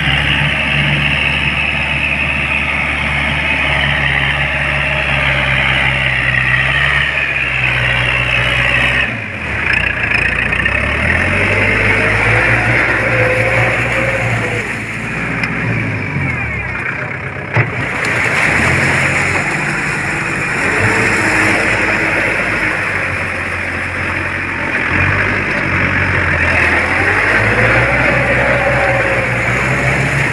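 Tractor's diesel engine running under load as it pulls a rotary tiller through flooded, muddy field soil. The engine speed dips and recovers several times.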